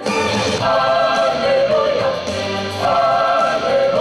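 Mixed gospel choir singing in harmony, with a woman singing lead into a microphone in front of it; held chords that change every second or so over a steady low bass part.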